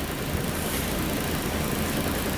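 Steady cab noise of a MAN heavy truck on the move: the low drone of the diesel engine and road rumble, with an even hiss over it.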